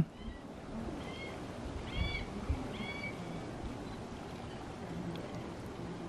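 Three or four short, high, arched chirps from a bird, about a second apart, over a steady outdoor background hum, with a soft thump about two and a half seconds in.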